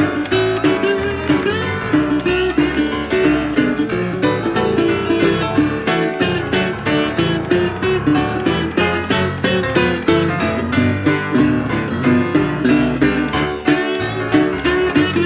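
Instrumental break of a blues duo: acoustic guitar picked at a quick, steady beat, with piano, and no singing.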